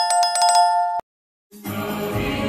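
Notification-bell sound effect: a bright, jingling bell ring with several quick strikes that cuts off suddenly about a second in. Music starts about half a second later.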